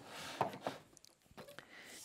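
Light handling noises as a corrugated plastic suction hose is lifted and moved about: faint rustling with a few soft clicks and knocks.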